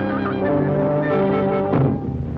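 Orchestral cartoon score: brass holding a sustained, shifting chord that breaks off near the end as drum strikes begin.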